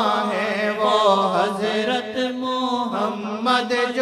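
Devotional singing of a Punjabi naat: a voice holding long notes and bending them in wavering melodic ornaments.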